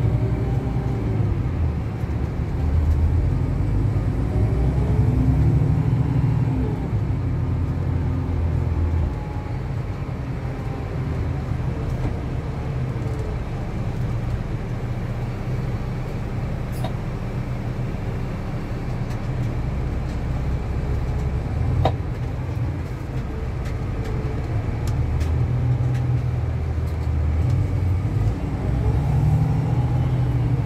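Coach's diesel engine and running noise heard from inside the passenger cabin as the coach drives, a steady low rumble whose note rises and falls several times as it pulls and changes speed.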